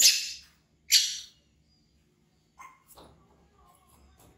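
Baby monkey screaming in fright at a toy crocodile: two short, shrill screams about a second apart, followed by a few faint knocks.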